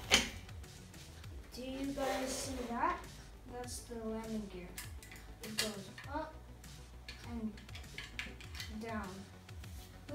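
Plastic Lego bricks clicking and clattering as the pieces are handled on a baseplate, with one sharp click right at the start. A child's voice is heard in short stretches in between.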